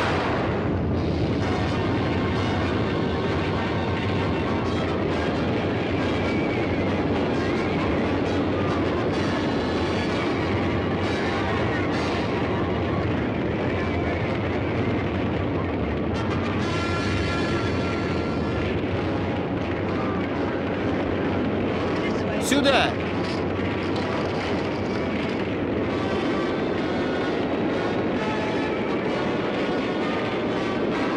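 Dense, steady film battle soundtrack: orchestral score over the rumble and clatter of a burning wagon careering down a slope amid the fight, with one brief sharp sound about 22 seconds in.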